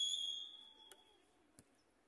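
Referee's whistle blown in one steady, high note that fades out about half a second in, signalling the free kick. A faint single knock follows about one and a half seconds in.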